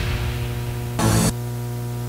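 The end of an electronic music track fading out, a brief loud burst of static about a second in, then a steady electrical hum with faint hiss.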